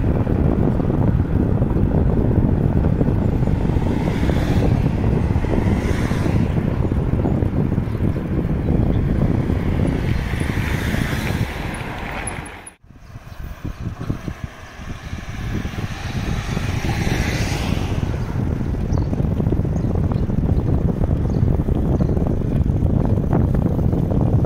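Wind buffeting the microphone of a camera on a moving bicycle: a loud, steady low rumble. It cuts out suddenly for a moment a little past halfway, then builds back up.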